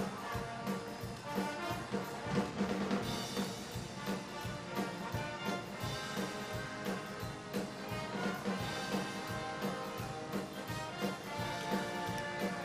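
Pep band brass and drums playing an upbeat tune over a steady beat.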